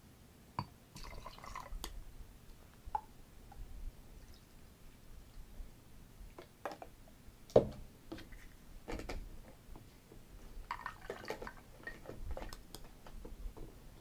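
Orange juice poured from a small jigger into a glass over ice in several short pours, with small clinks of glass and ice. A single sharp knock a little past the middle is the loudest sound.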